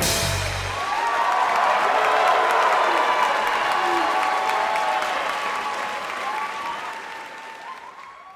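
Audience applauding after a jazz ensemble's number ends; the band's last low notes die away in the first second, and the applause gradually fades toward the end.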